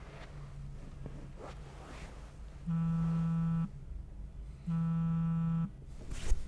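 A mobile phone on a couch cushion buzzing with an incoming call: two buzzes, each about a second long and a second apart.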